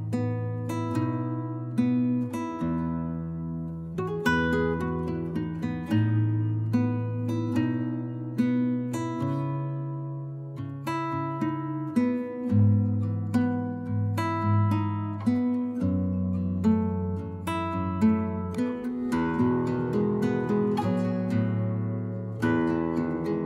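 Background music: acoustic guitar picking a run of plucked notes over sustained low notes.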